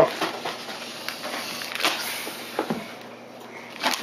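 Gift-wrapping paper rustling and crinkling as a wrapped present is handled, with a few sharp crackles scattered through.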